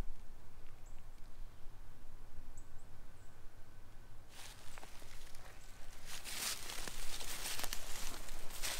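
Footsteps crunching and rustling through dry fallen leaves and dead grass, starting about halfway through after a quieter stretch.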